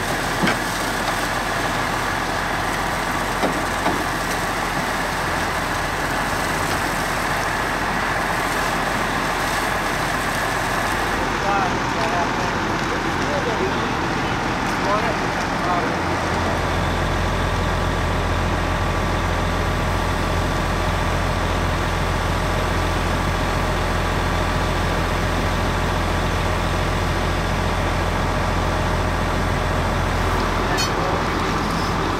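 A fire hose sprays water onto a burned-out van with a steady rushing hiss, over a running vehicle engine. About halfway through, a deeper low engine drone comes in and holds to the end.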